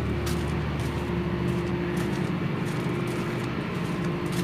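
A steady mechanical hum with a constant low drone, like a motor or engine running without change.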